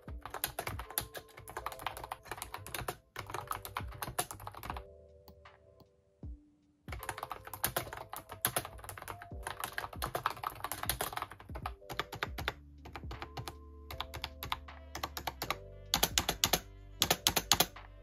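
Typing on a non-mechanical Bluetooth keyboard with round, typewriter-style plastic keycaps (E&Woma, sold as Ubotie): quick runs of light key clicks. The typing stops for about two seconds near the middle, then picks up again and gets denser near the end.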